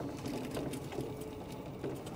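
Golf cart driving over a bumpy dirt track: a steady low running sound with a faint tone, and a quick patter of small rattles from the cart's body and windshield.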